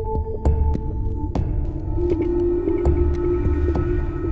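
Electronic wind instrument (EWI) playing long held synth notes: one note stops just over a second in, and a lower one is held from about two seconds in. Underneath is a low, irregular pulsing electronic backing with light clicks.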